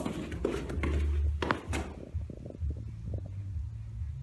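Low rumbling handling noise from a handheld camera being moved about in a small stairwell, with a few sharp knocks in the first two seconds, then softer low thumps.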